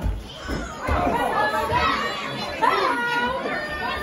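Ringside crowd of spectators, children's voices among them, shouting and chattering over one another, with a few low thuds in the first second.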